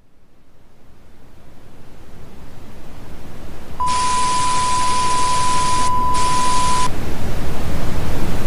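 Electronic outro sound effect for a channel logo animation: a noisy swell that grows steadily louder with a fast flutter. About halfway in, a steady high beep comes in with a burst of hiss and holds for about three seconds. The hiss drops out briefly near the end of the beep.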